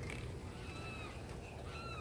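An animal calling twice, each call a short, slightly falling pitched note, faint over a steady low background hum.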